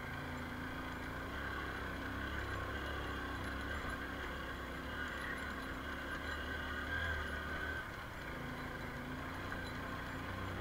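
Motorcycle engine running at low speed on a rough dirt track, a steady low drone that drops briefly about eight seconds in before picking up again.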